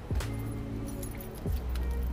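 Background music, with keys jingling and light clinks as the keys and a plastic drink cup are handled.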